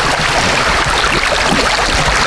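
Shallow brook running over pebbles: a steady rush of water.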